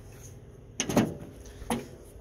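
Chevrolet S-10 pickup's steel hood being unlatched and lifted, with two short clunks: a louder one about a second in and a lighter one near the end.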